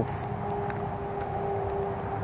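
Steady hum with a faint held tone, typical of an unseen motor running at a distance, over outdoor background noise.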